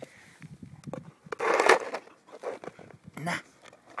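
A whippet mouthing and tugging at a plastic frisbee on paving stones: scattered clicks and scrapes, with one louder half-second noise about a second and a half in.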